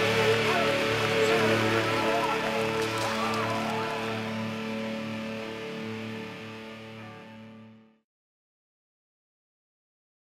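Background music soundtrack fading out, ending about eight seconds in, followed by silence.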